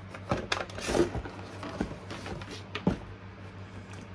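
Cardboard speaker packaging being handled and moved, with a few light knocks and rustles; the sharpest knock comes about three seconds in.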